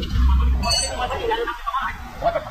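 A single bright metallic clink with a short ring just under a second in, a steel hand tool striking the vehicle's suspension metal, over a low rumble of shop noise.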